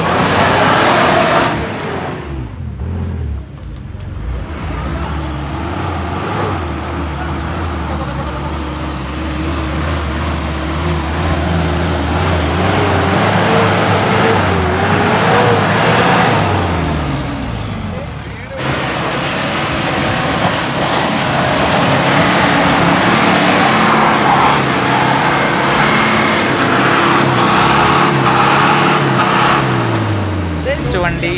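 Mitsubishi Pajero 4x4 engines revving hard while driving through deep mud, the pitch rising and falling with the throttle. About 18 seconds in the sound changes abruptly to a second Pajero revving.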